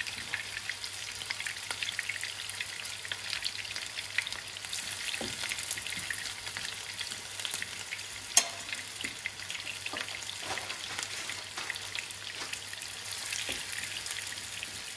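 Lamb kofta patties shallow-frying in hot oil in a pan: a steady crackling sizzle full of small pops as more patties are laid in. One sharp click stands out about eight seconds in.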